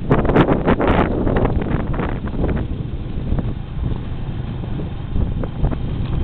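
Wind buffeting the microphone of a camera held on a moving motorbike, with the bike's engine running low underneath. The buffeting is heaviest in the first second, then settles to a steady rumble with small gusts.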